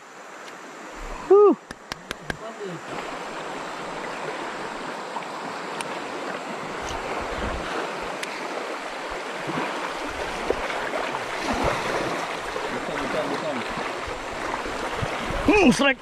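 River rapids rushing around a small boat, a steady noise of running water that builds gradually louder. A brief voice sound and a few sharp clicks come about a second and a half in.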